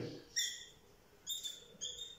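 Dry-erase marker squeaking on a whiteboard as figures are written: three short, high squeaks, about half a second in, past a second, and near the end.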